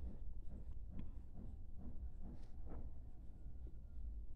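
Faint pen strokes on notebook paper as a word is handwritten, a few soft scratches over a low steady hum.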